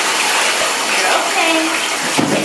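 Bathtub tap running steadily, water pouring into the tub as a continuous rush.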